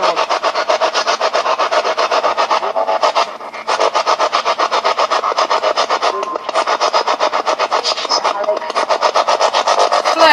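Spirit box sweeping through radio stations: loud static chopped into fast, even pulses, about nine a second, with a brief dip about three and a half seconds in.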